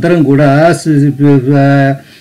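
A man chanting a Sanskrit verse in a slow melodic recitation, holding each syllable on a level note with short breaks between, and stopping just before the end.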